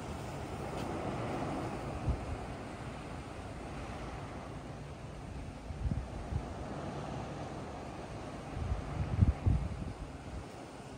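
Wind blowing across the microphone in gusts, loudest near the end, over a steady wash of sea surf.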